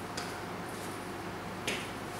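Two soft thumps of sneakers landing on an exercise mat during squats with alternating kicks, one just after the start and a slightly louder one near the end, over a steady low hum.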